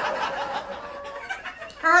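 Audience laughing at a joke, many people chuckling at once, dying down near the end.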